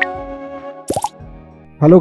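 Logo-intro sting: held musical notes fading out, with a quick upward-gliding 'plop' sound effect about a second in.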